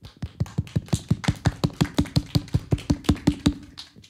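Fast, even hand clapping, about six or seven claps a second, that stops about three and a half seconds in. A faint steady low hum runs under it.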